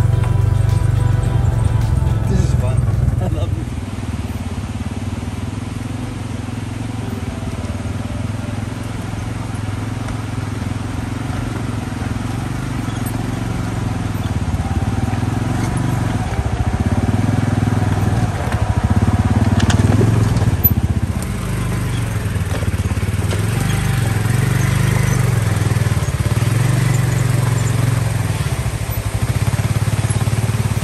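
Polaris Ranger side-by-side UTV engine running at low speed as it crawls over a loose-rock trail. Its note rises and falls repeatedly with the throttle.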